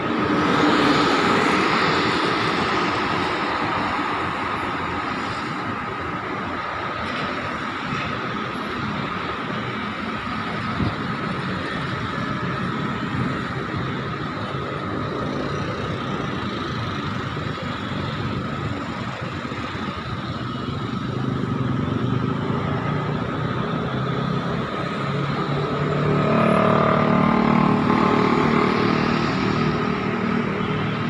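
Dense rush-hour city traffic on a multi-lane road, a steady wash of engines and tyres from many vehicles. It swells louder about a second in, and again near the end, where a nearby vehicle's engine grows loud for a few seconds.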